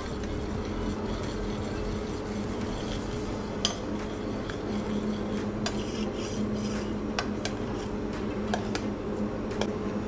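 A metal spoon stirring warm agar-set basil liquid in a small stainless steel saucepan, with a few light clinks of the spoon against the pan, over a steady low hum. The liquid is cooling and just starting to thicken.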